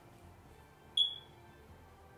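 Near silence broken once, about a second in, by a single short high-pitched ping that fades away quickly.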